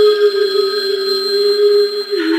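Dark psytrance synthesizer holding one steady electronic tone with thin high overtones and no drum beat.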